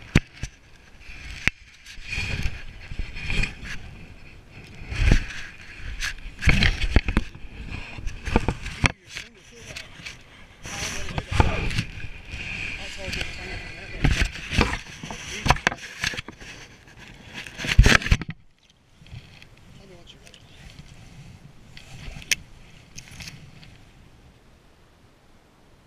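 Irregular scraping, knocking and splashing as a fish is handled and unhooked in a landing net in shallow water, with rubbing close to the camera's microphone. The noise stops short about three quarters of the way in and stays much quieter after that.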